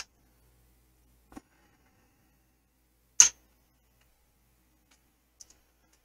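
Casino chips clicking as they are set down and stacked on the table: a handful of separate sharp clicks with near silence between them, the loudest about three seconds in.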